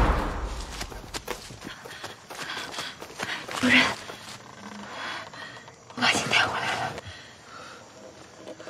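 A heavy boom with a low rumble at the start, then a person's gasps and cries, loudest about four and six seconds in.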